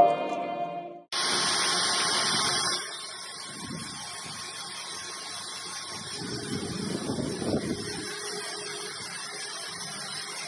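Background music cuts off about a second in. Then comes a steady machine noise, a grainy hiss that starts suddenly, loud at first and easing after a couple of seconds: a round electric vibrating sieve running with a tray heaped with small dark seeds.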